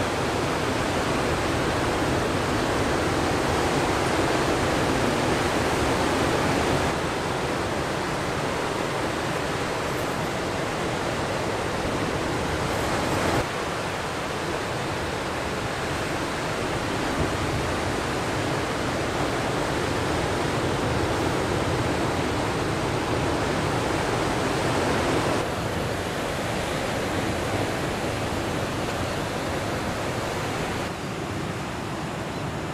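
Steady wash of ocean surf breaking on the shore, a continuous noisy roar that drops or shifts sharply in level a few times, at about 7, 13 and 25 seconds in.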